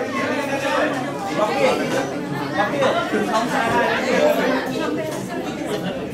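Several people talking at once: overlapping conversational chatter with no single clear speaker.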